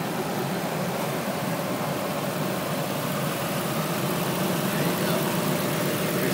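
Ford 5.4-litre V8 of a 2007 Expedition idling steadily, heard from the open engine bay.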